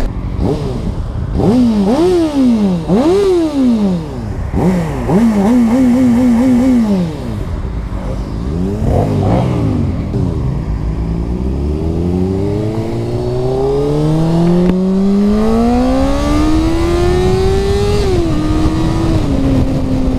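Honda CBR600RR (PC40) inline-four engine revved in a few sharp throttle blips, then a quick flutter of the throttle, then pulling away in one long, smoothly rising climb in pitch. Near the end the pitch drops in two steps as it shifts up.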